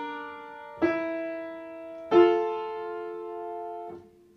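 Upright piano: the right hand plays slow chords, each held and left to ring. New chords are struck about a second in and again about two seconds in, the second of these loudest, and all are released just before the end.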